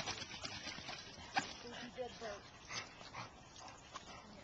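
A black retriever whining briefly about two seconds in. A single sharp click comes a little before the whine.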